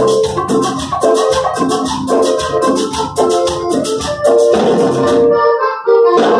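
Live cumbia band playing loud: a keyboard melody over a fast, even percussion rattle and bass. Near the end the percussion and bass drop out for about half a second, and the full band comes back in.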